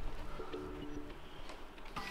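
Laptop's new-hardware chime, a faint steady tone of about a second starting about half a second in, as Windows detects a USB video capture stick just plugged in, with a few light clicks.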